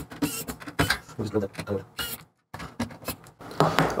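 Scattered light clicks and taps from hand work on an open laptop's logic board: a precision screwdriver and small metal parts being handled. The sound drops out completely for about a quarter of a second just past the middle.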